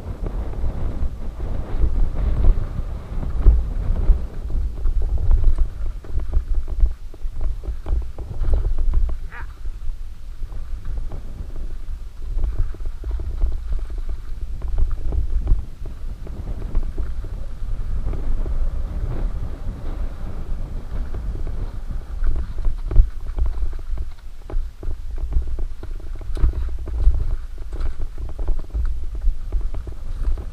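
Muffled sound of a mountain bike ridden over a rough, rocky dirt singletrack, heard through a defective GoPro microphone: a low wind rumble on the mic with frequent knocks and rattles from the bike over the ground.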